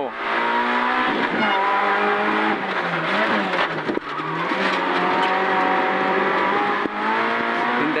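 A Peugeot 106 N2 rally car's four-cylinder engine revving hard, heard from inside the cabin, its pitch rising and falling with throttle and gear changes. About four seconds in it briefly eases off and dips as the car slows for a left hairpin, then pulls hard again.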